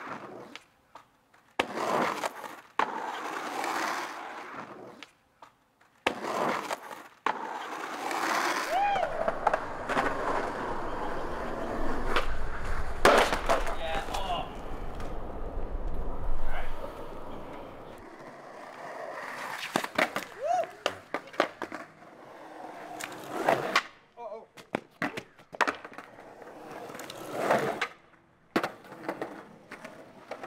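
Skateboard wheels rolling on concrete, broken by repeated sharp clacks and slams of the board striking the ground during tricks and a fall. Voices call out now and then.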